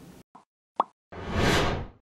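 Animated logo outro sound effects: two short pops, then a whoosh lasting under a second.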